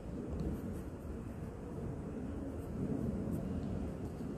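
Graphite pencil sketching on sketchbook paper: quiet scratching strokes over a steady low rumble.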